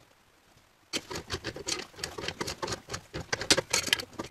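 Black iron gas pipe fitting being turned tight with tongue-and-groove pliers: a quick, irregular run of metal clicks and scrapes that starts about a second in.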